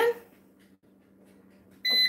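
Digital air fryer giving one short, high electronic beep near the end.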